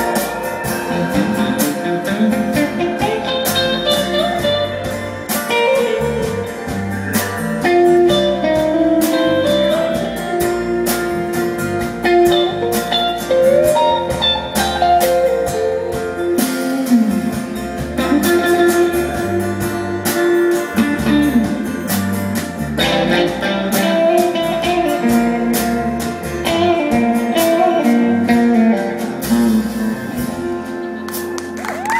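Live rock band playing a guitar-led instrumental break with no singing: a lead guitar line with sliding notes over strummed acoustic guitar, bass and a steady drum beat.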